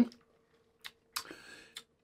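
A quiet pause in a small room with a few faint clicks and a short soft breathy hiss about a second in.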